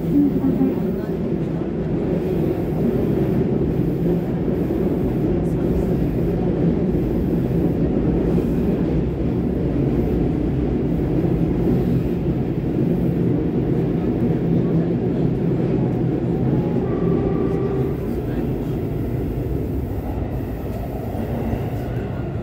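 Sendai Subway Namboku Line train heard from inside the car while running between stations: a steady rumble of wheels on rail with motor hum. A brief higher whine comes late on, and the noise eases slightly near the end as the train nears the station.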